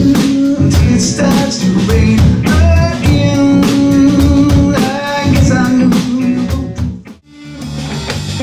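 Live band playing bluesy rock: electric guitar, bass guitar and drum kit, with sung vocals. Near the end the sound drops out for a moment, then electric guitar comes back in.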